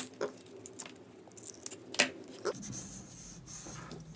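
Copper tape and a paper card being handled by hand: a few short rustles and ticks as the tape is pulled and pressed down onto the card, the sharpest right at the start and about two seconds in.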